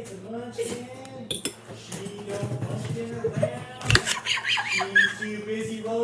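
A person singing an improvised, made-up song in a sustained, melodic voice. A metal spoon clinks against a glass bowl, loudest about four seconds in.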